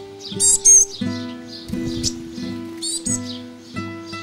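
Classical guitar playing slow plucked notes, with a small bird's high, sharp chirps breaking in, loudest about half a second in and again near three seconds.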